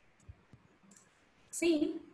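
A few faint computer mouse clicks during a quiet stretch, followed by a woman saying a single word near the end.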